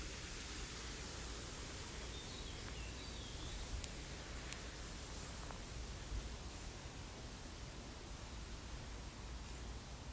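Outdoor park ambience: a steady faint hiss of background noise with a few faint bird chirps about three seconds in and a couple of light clicks.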